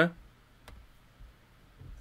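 A single short mouse click against near-silent room tone.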